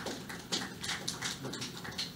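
Scattered light clicks, irregular, about four or five a second.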